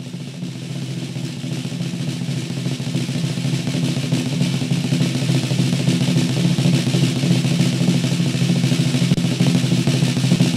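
Music: a drum roll building steadily louder over a sustained low chord.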